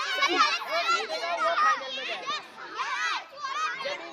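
Many children's voices shouting and cheering over one another, high-pitched and continuous, with a brief dip about halfway through.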